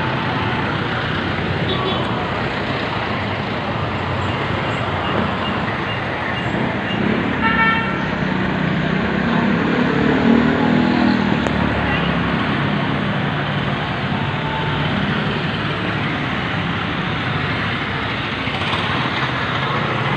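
Steady street traffic from passing motorcycles, a jeepney and cars, with a brief vehicle horn toot about seven and a half seconds in and an engine swelling past a couple of seconds later.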